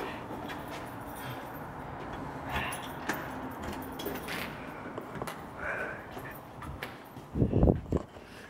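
Scattered clicks and knocks over a rustling, handled-microphone noise, with a few faint distant voices, while a cut Christmas tree is carried along a hallway. Near the end there is a loud, short low rumble of handling noise as the camera is swung round.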